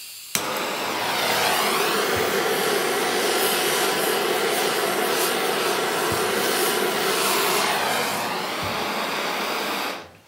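Handheld gas blowtorch burning steadily with a loud, even rushing flame, played on a Kevlar cord that does not melt. It starts with a click about a third of a second in and cuts off abruptly at the end.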